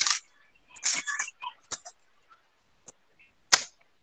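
Short rustles and clicks of a sheet of paper being picked up and held up to a video-call microphone, the loudest a single sharp snap about three and a half seconds in. The sound cuts to dead silence between the bits.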